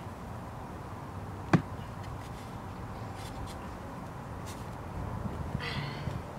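A long-handled shovel worked in dry garden soil to pry up a clump of crabgrass: one sharp knock about a second and a half in, then rustling and soft crunching of soil and roots near the end as the clump comes loose.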